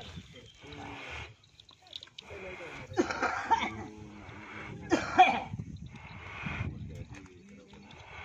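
Young cattle being handled and harnessed, heard in several harsh bursts about a second long, the loudest around three and five seconds in.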